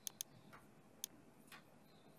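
Computer mouse clicks: a quick double click, then a single click about a second later, with a fainter tick after it, over near-silent room tone.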